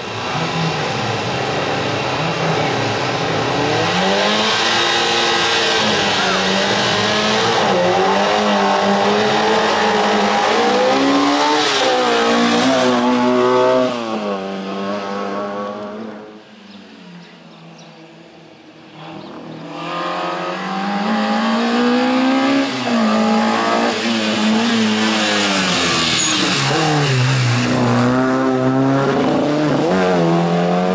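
Group A race car's engine revving hard, its pitch climbing and falling again and again as the driver shifts and lifts through the cone chicanes. About halfway through the engine sound drops away for a few seconds, then comes back up loud.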